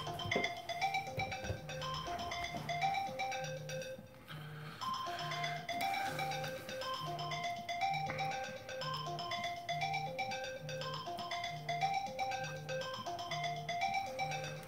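Mobile phone ringtone playing a looping marimba-style melody of short mallet notes over a low buzz pulsing about twice a second: an incoming call ringing.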